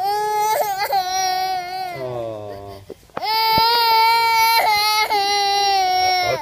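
Toddler girl crying in two long, high-pitched wails: the first trails off and drops in pitch about halfway, and after a quick breath the second is held steady to the end.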